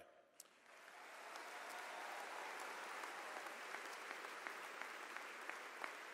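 Audience applauding, faint and distant, starting and building up about a second in, then holding steady.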